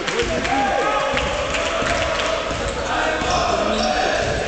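Sounds of a basketball game in a sports hall: a ball bouncing on the court with scattered knocks, and players' and spectators' voices calling out.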